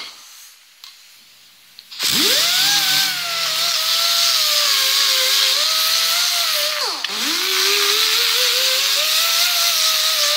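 Small handheld electric grinder working the metal fuel-line blade of a homemade meat hook, scuffing off its coating. The motor winds down at the start and is off for about two seconds, then spins up with a rising whine and grinds with a hiss, its pitch sagging under load. Near seven seconds in it briefly slows and spins back up.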